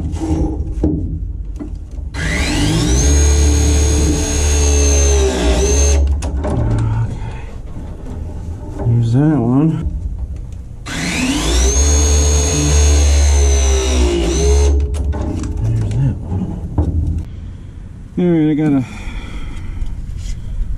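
Cordless hydraulic press tool crimping press fittings on copper refrigerant line, twice: each cycle is a motor whine that climbs in pitch, holds for a few seconds under a heavy low drone, then drops off as the press completes.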